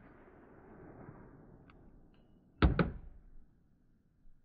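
Two sharp knocks in quick succession about two and a half seconds in, the loudest sounds here, over a faint steady outdoor hiss.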